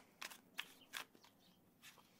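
A deck of tarot cards being shuffled by hand, heard as a few faint, short card clicks.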